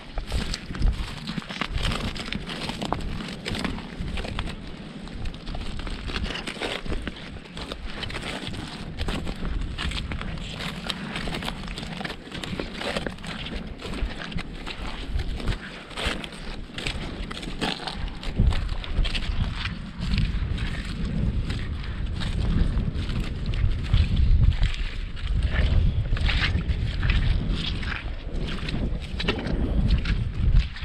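Wind buffeting the microphone in a low, gusting rumble that grows heavier about halfway through, over a steady run of short crunching and rustling steps through marsh grass and oyster-bed mud.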